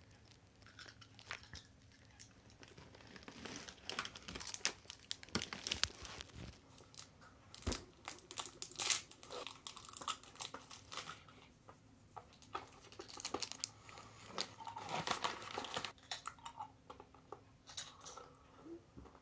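Plastic snack bags crinkling and rustling as they are handled, then crunchy snacks being bitten and chewed, with foil wrappers crinkling; irregular sharp crackles throughout.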